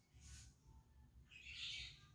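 Near silence, broken about one and a half seconds in by one brief soft swish of a paintbrush's bristles on painted wood trim.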